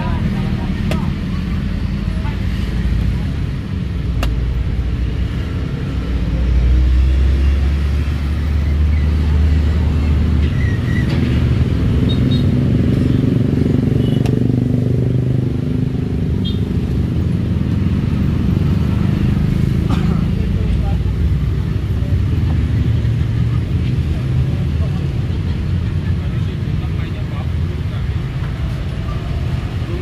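Steady low rumble of motor traffic with people's voices in the background, heaviest from about six to ten seconds in, and a few sharp clicks.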